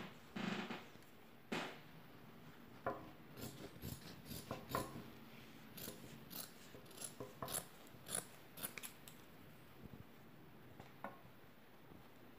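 Scissors cutting through felt: a quiet run of short, irregular snips. Before it, a little soft handling of the felt.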